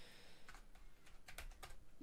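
Several faint computer keyboard keystrokes as a number is typed into a field, most of them in the second half.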